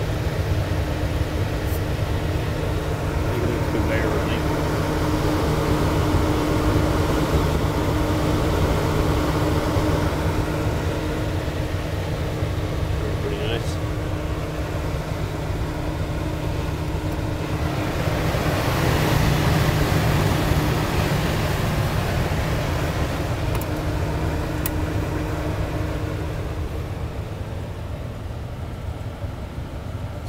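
Lincoln 1116 conveyor pizza oven running hot: the steady hum and air rush of its blower fan and conveyor drive, with a steady tone over the hum. The rush swells louder for a few seconds past the middle.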